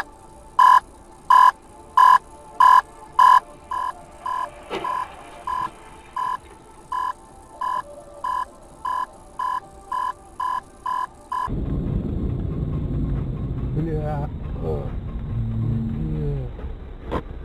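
A repeating electronic beep, about two a second, with a loud first run of five beeps and then quieter beeps that come faster until they stop suddenly. After that comes a steady vehicle rumble with a voice near the end.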